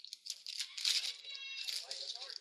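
A clear plastic bag crinkling as it is handled, with the small parts inside it rattling. The rustle is irregular, with a brief faint squeak about halfway through.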